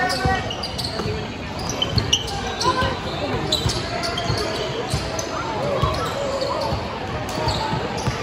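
Basketball dribbling on a hardwood gym floor, irregular sharp thuds, among indistinct shouts and chatter from players and spectators.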